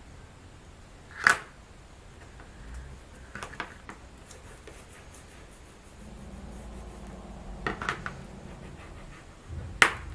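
Bone folder pressing and rubbing along the folded paper edges of a chipboard cover on a cutting mat, with a few sharp clicks of the tool against the board, the loudest about a second in and another just before the end.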